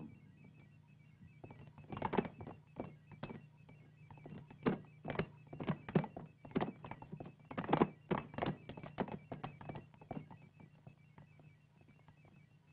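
Footsteps of several people, irregular thuds on a hard floor, over a steady low hum and a faint, fast electronic pipping.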